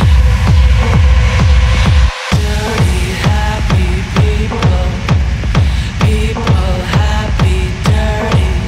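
Hard techno with a steady four-on-the-floor kick drum at about two beats a second. Just after two seconds the low end cuts out for a moment, then the kick returns under a stepping, repeating synth riff.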